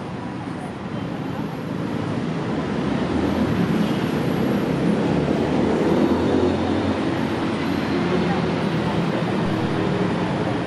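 Low city traffic rumble mixed with indistinct voices, swelling over the first few seconds and then holding steady.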